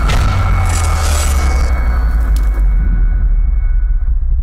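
Trailer sound design: a cinematic impact hit, then a deep bass rumble held under a thin steady high tone, the upper hiss fading away about three seconds in.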